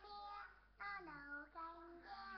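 A young girl singing alone in a child's voice, holding steady notes in two short phrases with a brief breath between them.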